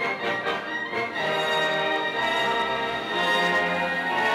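Symphony orchestra playing, strings to the fore: a few short detached notes, then full sustained chords from about a second in.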